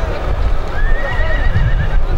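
A horse whinnying: one quavering call of about a second that starts a little before the middle, over a steady low rumble.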